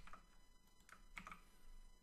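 Near silence with a couple of faint computer keyboard keystrokes about a second in.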